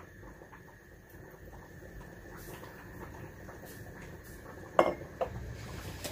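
A cooking utensil clinking and scraping lightly in a frying pan as chopped onion and peppers cook in olive oil, with two sharp knocks near the end.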